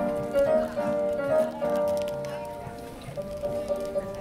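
A woman singing in an operatic style, holding long notes with a slight waver, in the open air of a cobbled square.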